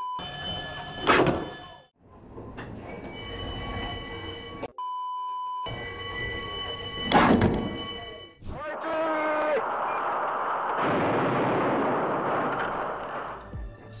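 A tram striking a car that cut across its tracks: one loud thump about a second in, heard again about six seconds later, each time over steady ringing tones. Each thump follows a steady one-pitch bleep.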